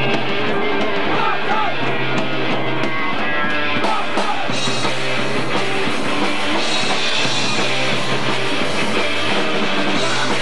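A punk rock band playing live and loud, with distorted electric guitar, bass and drum kit.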